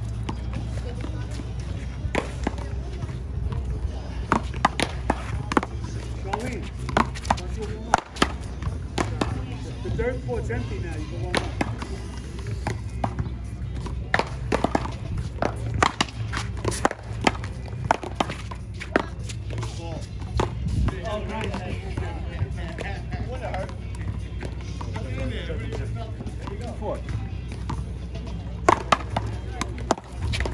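One-wall paddleball rally: a small rubber ball cracks off solid paddles and the concrete wall, sharp single hits at irregular intervals, over a steady low hum.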